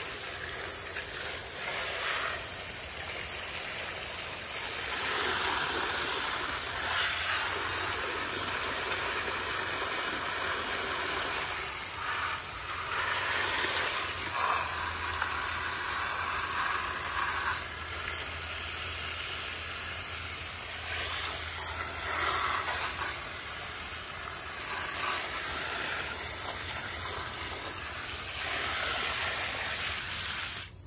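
A stream of water from a hose pouring and splashing into a planter pot already full of water and stones, a steady gushing noise as the pot is topped up.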